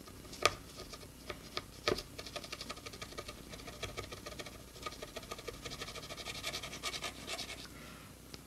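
Plastic guitar pick scraping sticker residue off a bass's glossy finish: a fast, uneven run of small scratchy clicks, with two sharper clicks in the first two seconds.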